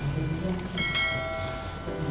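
Subscribe-button animation sound effect: a sharp click about half a second in, then a bright bell chime that rings out and fades over about a second.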